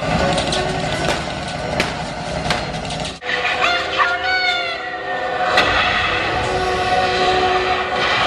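Loud, dense din of a live water stunt show: spraying water jets and machinery with shouting performers over it. The sound breaks off abruptly about three seconds in, and a sudden crack comes a little past halfway.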